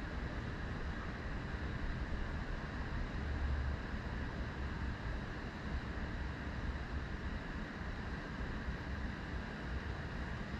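Steady background rumble and hiss with no distinct events.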